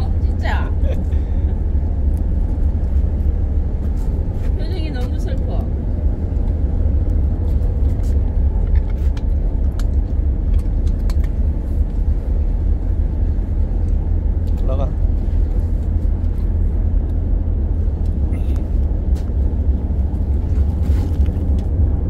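Steady, deep drone of a ship's engine and machinery heard from the open deck while the vessel is underway.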